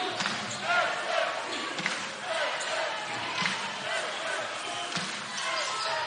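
A basketball being dribbled on a hardwood court, bouncing repeatedly at an uneven pace, over the chatter of the arena crowd.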